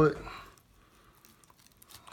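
Faint soft crackling of a knife slicing down through a raw northern pike fillet, cutting until the blade meets the row of Y bones.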